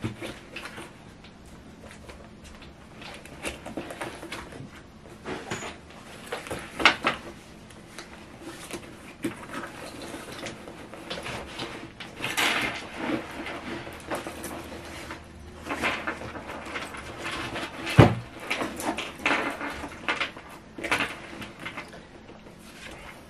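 Hands packing items into a large denim tote bag: irregular rustling of the fabric and items, with scattered clicks and light knocks as things are set inside. A sharper knock with a dull thud about 18 seconds in is the loudest sound.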